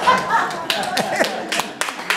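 Small audience in a hall laughing and clapping after a punchline, the claps scattered and separate rather than a full round of applause.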